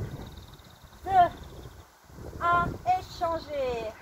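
A woman's voice calling out the last numbers of an exercise countdown in French, short words about a second apart, with a faint steady high-pitched tone in the background.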